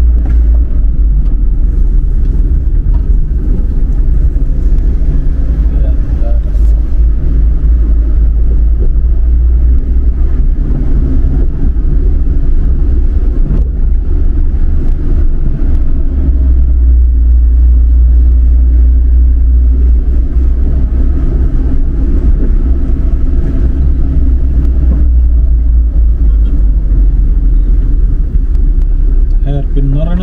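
Car driving noise heard from inside the cabin: a loud, steady low rumble of engine and tyres on the road.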